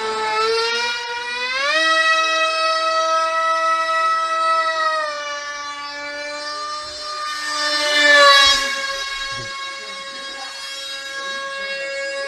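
Remote-control model jet's electric motor whining in flight, a high steady tone with many overtones. It climbs in pitch as the motor speeds up about one and a half seconds in, dips slightly around five seconds, and swells loudest with a rush of air around eight seconds.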